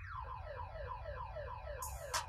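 Car alarm siren played back over a speaker as a freestyle beat. It sounds a run of quick falling chirps, about five a second, which follow on from a rising-and-falling warble, one of the alarm's cycling tone patterns.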